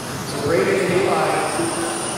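A race announcer's voice calling the race, heard over a background of general noise in the hall.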